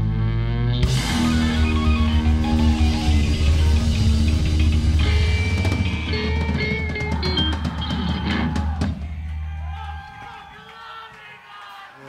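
A live rock band, with electric guitar, bass and drum kit, playing the closing bars of a blues-rock song, the drums hitting hard toward the end. The band stops about ten seconds in and the last chord rings out and fades.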